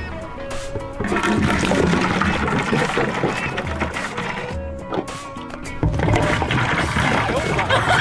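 Drink glugging out of upturned plastic bottles into a large plastic water-cooler jug. The gurgling starts about a second in, eases briefly around the middle and picks up again near six seconds, over background music.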